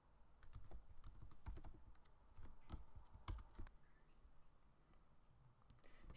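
Faint computer keyboard typing: a quick run of separate keystrokes that stops about two-thirds of the way in.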